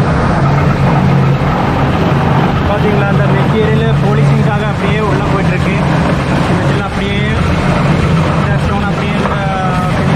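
Granite-processing machinery running steadily, with a constant low hum under a dense mechanical noise. Voices can be heard faintly over it.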